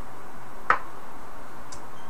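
One sharp click a little before the middle, then a fainter, higher tick about a second later, over a steady background hiss. These are small handling clicks.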